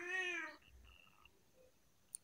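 A tabby cat gives one short meow, its pitch arching slightly up and down, which ends about half a second in.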